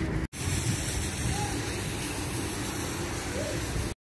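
Steady rushing outdoor noise, with brief dead silences at the edits just after the start and at the end.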